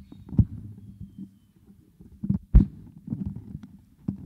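Microphone handling noise: a lectern microphone being adjusted on its stand, giving irregular dull thumps and rubbing, with the loudest, sharpest knock about two and a half seconds in.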